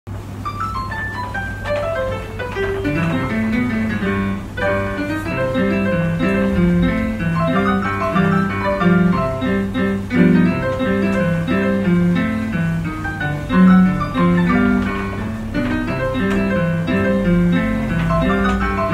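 Piano music: a melody of short notes over a lower line of bass notes, playing continuously.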